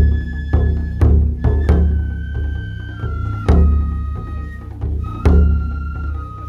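Japanese taiko drums played in an ensemble: heavy, deep strikes about once a second, with lighter hits between them. Over the drums, a high flute-like melody of long held notes steps down in pitch.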